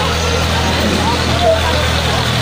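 A vehicle engine idling steadily with a constant low hum, with faint voices nearby.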